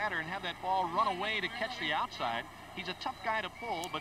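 Speech at a lower level than the hosts' talk, most likely the play-by-play commentary of the old baseball TV broadcast playing under them.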